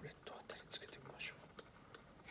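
Faint handling noise from a ukulele: soft scattered clicks and rustles of fingers moving on the neck and strings.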